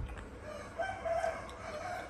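A single drawn-out animal call, about a second and a half long, holding a fairly level pitch.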